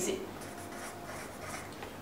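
Felt-tip marker writing on paper in short, quiet strokes.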